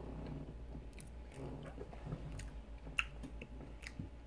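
A person quietly chewing a mouthful of donut, with a few scattered soft mouth clicks, over a faint steady low hum.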